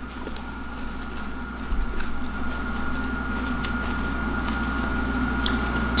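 Chewing of bites of a Power Crunch chocolate wafer protein bar, with scattered small crunches and clicks over a faint steady hum.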